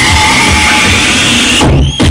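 Loud electronic dance music with a heavy, pounding bass beat. Near the end the music briefly thins out to a rising sweep, then the beat drops back in.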